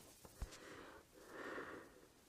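Near silence: a small click about half a second in, then two faint soft breath-like swells close to the microphone.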